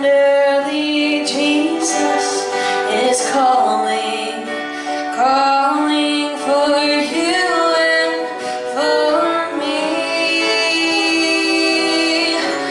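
Two fiddles playing a slow, sliding melody together over acoustic guitar accompaniment.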